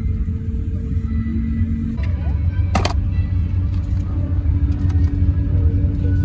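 Steady low rumble of an Airbus A350-1000 cabin at the gate, with one sharp click about three seconds in as the seatback tray table is unlatched and lowered.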